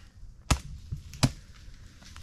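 A shovel chopping into the forest floor while digging for water: two sharp strikes, with a lighter one between them.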